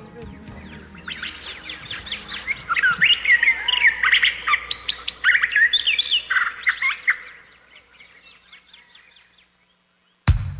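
Several birds chirping together: a dense run of short, quick chirps that builds over the first few seconds, peaks in the middle and thins out near the end, over a faint low hum.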